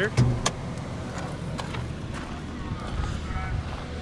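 Hood release lever under the dashboard pulled: two sharp clicks in quick succession about half a second in as the hood latch lets go, over a steady low rumble.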